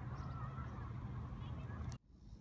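Outdoor ambience: faint, wavering distant calls over a steady low rumble, which cuts off abruptly at the end.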